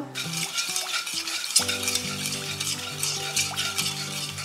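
A spatula stirring and scraping a wet mix of sugar and water around a metal kadhai, to dissolve the sugar for a syrup, with a repeated scratchy scraping.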